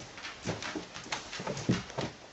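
A dog's paws thumping on carpeted stairs as it gets up and climbs them: a run of soft, irregular footfalls, about half a dozen in two seconds.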